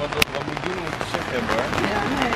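Thunder rumbling over the steady patter of rain, with one sharp click a fraction of a second in.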